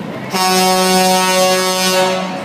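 A truck's air horn sounding one long, steady blast. It starts suddenly about a third of a second in and holds one deep pitch until near the end.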